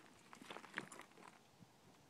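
Near silence, with a few faint ticks and rustles in the first second or so.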